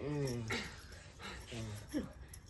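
A sick man moaning: a drawn-out, falling groan at the start and a shorter one near the end.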